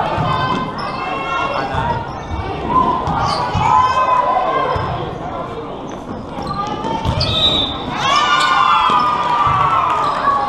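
Volleyball rally in a gym: high voices of girls calling and shouting on and off, over scattered thuds of the ball being struck and of players' feet on the sport court.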